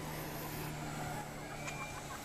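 An engine running steadily with a low, even hum.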